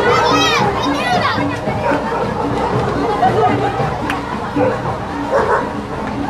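Children shouting and chattering in a street crowd, with a burst of high shrieks in the first second. Music with a steady beat plays underneath.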